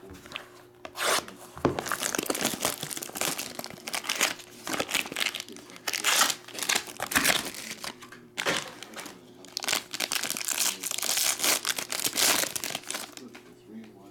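Foil trading-card pack wrappers crinkling and being torn open, in irregular bursts of rustling that ease off near the end.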